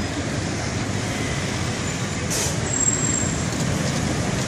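City street traffic: a steady mix of motor scooter and car engines passing close by. About two seconds in there is a short hiss, followed by a brief high squeal.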